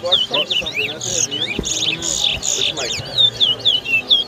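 Caged towa-towa (large-billed seed finch) singing in a whistling contest: rapid runs of short looping whistled notes, with a harsher, buzzier passage between about one and two and a half seconds. Low voices murmur underneath.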